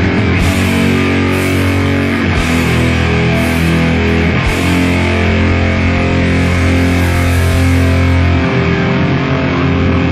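Hardcore punk band recording: distorted electric guitar with bass and drums, loud and dense. Cymbal crashes come about once a second through the first half, and the riff changes about eight and a half seconds in.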